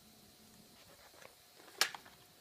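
A single sharp click near the end, with a smaller click just after it, over faint steady background hiss.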